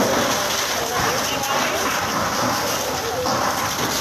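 Steady rushing hiss of a fire hose spraying water onto a burning house, with the fire's own noise mixed in and faint voices underneath.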